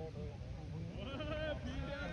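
Indistinct voices of people talking, louder in the second half.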